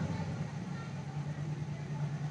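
A pause between sung lines, filled by a faint steady low hum and background noise.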